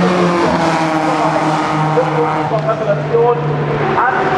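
Racing car engines at speed, passing behind the catch fence. They hold a steady pitch, then fall in pitch during the second half as a car goes by.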